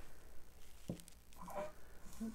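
Faint handling noise of gloved hands working at the edges of a wet acrylic-pour canvas, with a single light tap about a second in.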